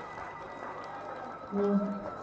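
Low background hall noise in a pause of a man's speech over a microphone, then his voice starts again about one and a half seconds in.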